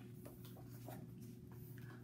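Pages of a large picture book being turned by hand: faint, soft paper rustles and brushes, over a low steady hum.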